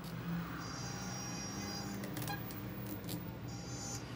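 Adhesive tape being pulled off its roll in two stretches, with a few sharp clicks near the middle, over a steady low hum.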